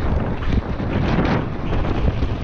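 Wind buffeting an action camera's microphone on a fast descent on a Kross Soil 1.0 mountain bike, over the rumble of knobby tyres on a dirt trail and frequent knocks and rattles from the bike.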